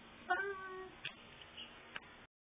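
A single short meow, falling slightly in pitch, followed by a sharp click and a fainter one near the end.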